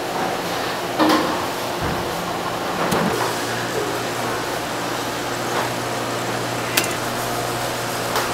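Seafood stall ambience: a steady wash of background noise with a few knocks of salmon fillets being handled on a wooden cutting board, the loudest about a second in and a sharp click near the end. A low steady hum comes in about three seconds in.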